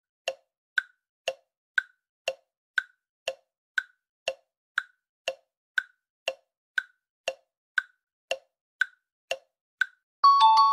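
Tick-tock clock sound effect for a countdown timer: sharp clicks about two a second, alternating higher and lower, over silence.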